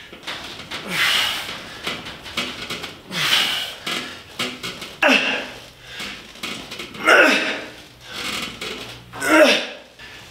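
A man exhaling hard with a short voiced grunt on each rep of glute-ham developer back and side extensions, about one every two seconds, each grunt falling in pitch.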